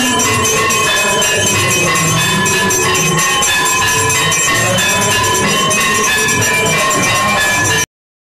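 Temple bells and percussion clanging continuously for the aarti: a dense, fast rattle of strikes over steady ringing bell tones. The sound cuts out abruptly near the end.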